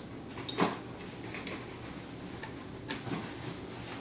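A few scattered small clicks and taps of wire spade connectors being handled and pushed onto the terminals of a glass-top range's radiant heating element, the clearest about half a second in.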